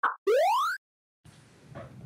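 Editing sound effect for a video transition: two brief blips, then a rising electronic sweep of about half a second that cuts off sharply, followed by silence.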